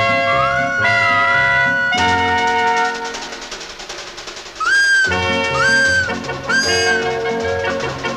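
Instrumental cartoon theme music with a repeating bass figure and a gliding high melody. It quietens around the middle, then three short whistle toots, each rising and then held, come about five, six and seven seconds in.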